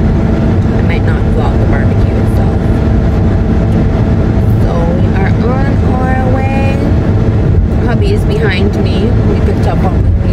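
Steady low road and engine rumble inside a moving car's cabin. A person's voice comes in about five seconds in, with some long held notes, and again near the end.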